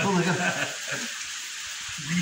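Steady sizzling hiss of food frying in hot oil, left on its own once a voice stops about two-thirds of a second in.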